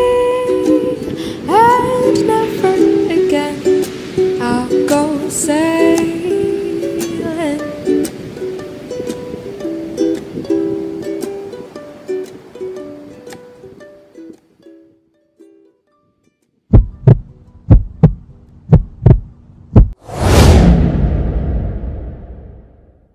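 Plucked-string background music with bending notes, fading out over the first dozen seconds or so. After a short silence come about seven sharp, loud low thumps in quick succession, then a loud whoosh that swells about two seconds before the end and dies away.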